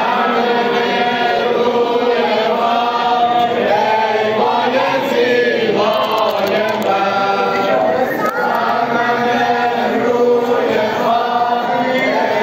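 Crowd of men chanting a Shia mourning lament (noha) together in unison, loud and continuous.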